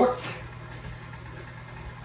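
A steady low hum from a kitchen appliance, running on after a spoken word at the start.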